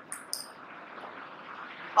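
Marker writing on a whiteboard: two short, hissy strokes near the start, then faint room noise.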